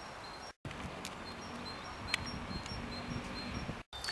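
Outdoor park ambience: a steady hush with short, high, repeated chirps of small birds. The sound cuts out completely twice, briefly, about half a second in and just before the end.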